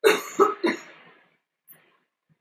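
A man coughing into a microphone: three quick coughs within about a second.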